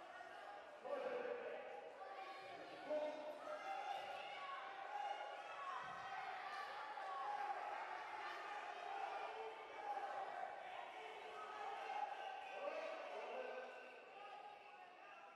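Several voices shouting over one another in a large hall, with a few dull thuds now and then.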